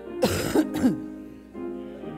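A person close to the microphone gives a short laugh, three quick loud bursts in the first second, over a piano playing steadily underneath.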